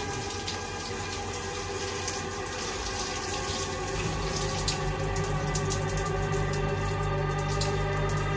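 Shower spray running steadily under a sustained drone of film score music, which swells with a low organ-like tone from about halfway through.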